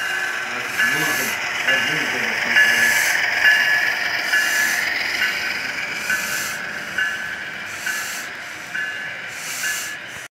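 Model train running past on layout track, its sound system sounding a short ringing tone repeating a little more than once a second, with bursts of hiss over the rumble of the cars rolling along the rails.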